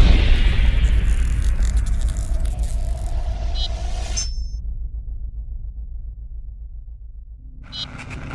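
Logo-sting sound effect: a deep boom whose low rumbling tail dies away slowly under a fading hiss, with a couple of short bright chimes about three and a half seconds in. The hiss then cuts off suddenly, leaving only the low rumble, and a new rising swell begins just before the end.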